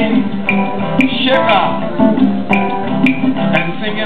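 Live acoustic band music led by strummed acoustic guitars, with short sharp strokes marking a beat about twice a second.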